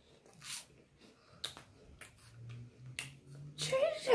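A person biting into and chewing a cheese puff snack (Cheez-It Puffs), heard as a string of short, crisp crunching clicks. In the second half comes a low closed-mouth hum while chewing.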